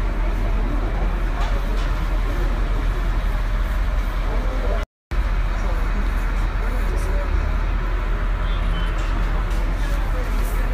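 Indistinct voices of people talking over a steady low rumble, broken by a brief total dropout of sound about halfway through.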